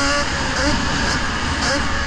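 Onboard sound of a radio-controlled buggy driving on a snowy track: strong wind and vibration rumble on the car-mounted camera, with a pitched motor sound that rises and falls briefly at the start and faintly twice more.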